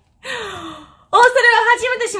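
A woman's breathy gasp-and-sigh after laughing, falling in pitch. About a second in her voice comes back high and wavering, speaking through laughter.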